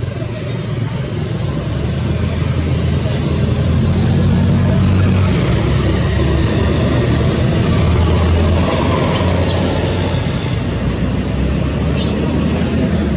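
Steady low rumbling noise that builds over the first few seconds, holds through the middle and eases slightly toward the end.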